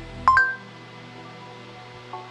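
A short rising two-note electronic beep about a quarter second in, the phone app's chime acknowledging a spoken voice command, over soft background music with sustained tones.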